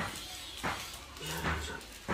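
Small plastic seasoning sachets from instant-noodle packs being torn open by hand: a few short, sharp crinkling tears.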